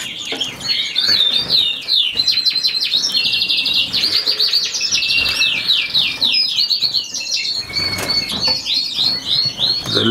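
Many aviary finches chirping and twittering without a break, quick high notes and trills overlapping, with a flutter of wings as a bird flies across the flight.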